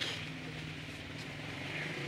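A faint, steady low hum over a light hiss: background motor noise.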